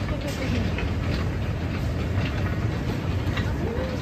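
An airport baggage carousel running: a steady low rumble with light clattering from the moving conveyor.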